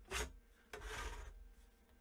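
Outer cover of an Agilent 34401A bench multimeter sliding along its chassis as the case is opened, making a faint rub and scrape. There is a short handling noise just after the start, then a faint rubbing for about half a second around the middle.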